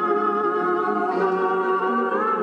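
Instrumental introduction of a song played back from a Grundig reel-to-reel tape recorder: steady held notes, no singing yet.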